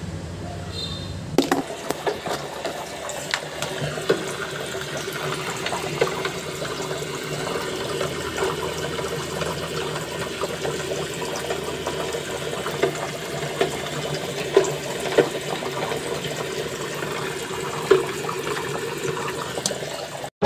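Water pouring in a steady stream into a freezer box's embossed metal inner cabinet, splashing against the liner and pooling, as the cabinet is filled for a leak test. It starts about a second and a half in, with scattered sharper splashes.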